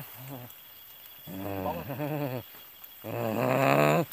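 A man's voice making long, low, wordless vocal sounds: a short one at the start, then two drawn-out ones, the second louder and running into the end.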